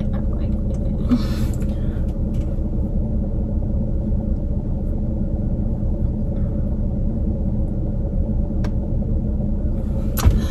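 Steady low rumble and hum of an idling car, heard inside the cabin. A brief rustle comes about a second in, and a single faint click near the end.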